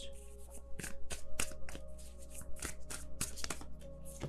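Tarot cards being shuffled by hand: a quick irregular run of short card flicks and snaps, several a second.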